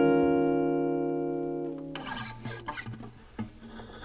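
Acoustic guitar chord ringing out and fading over about two seconds, followed by a quieter stretch with a few faint scratchy string sounds, in an unsung passage of a Korean indie song.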